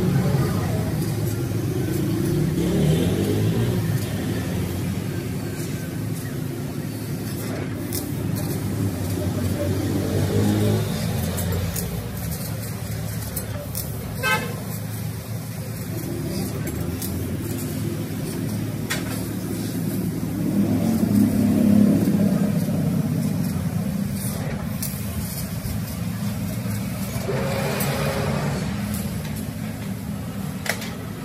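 CNC laser cutting machine running as it cuts sheet steel: a steady mechanical hum that swells and eases a few times, with a few sharp clicks.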